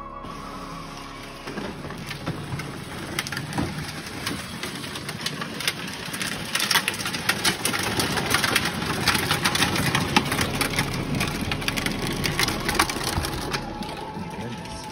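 Hard plastic wheels of a pink Barbie ride-on toy car crunching and rattling over the driveway as it rolls along: a dense, steady crackle of grit under the wheels, louder from about six seconds in.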